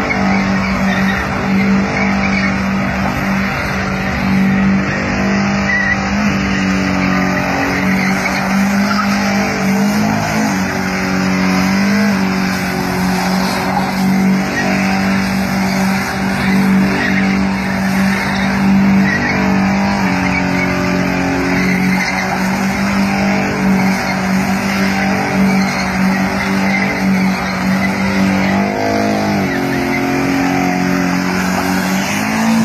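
Volkswagen Golf hatchback spinning doughnuts: the engine is held at high, steady revs under continuous tyre screech. The engine note dips briefly a couple of times, about ten seconds in and near the end.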